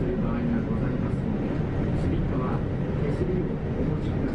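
Interior of a moving city bus: steady engine and road rumble, with indistinct voices.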